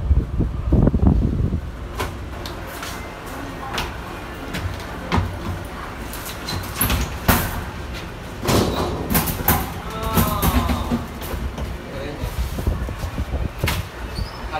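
Inside a Mitsubishi traction service elevator cab: a low rumble near the start, then scattered clicks and knocks as the car doors slide open at a floor. Voices are heard in the background.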